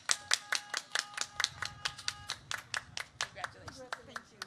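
One person clapping steadily, about five claps a second. Under the first two seconds a car horn sounds, held steady, then stops.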